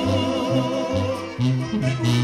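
Mexican banda playing live: a tuba bass line stepping from note to note about twice a second under brass and clarinets, with the singers' voices over the band.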